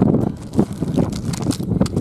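Wind blowing across the microphone: loud, gusty low rumbling with irregular crackles and knocks.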